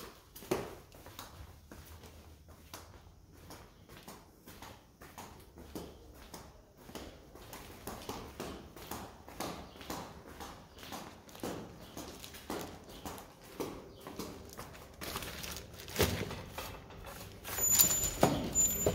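Footsteps walking at a steady pace on a stone floor. Near the end, a heavy wooden door is unlatched and pulled open with a loud clunk.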